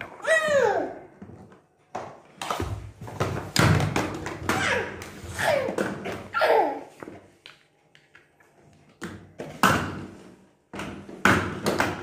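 Knocks and thumps on a hard floor, mixed with a young child's short wordless cries that fall in pitch, several in a row in the middle.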